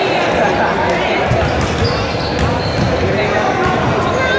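Basketballs bouncing on a hardwood gym floor during warmup drills, many irregular thumps, over a steady babble of voices.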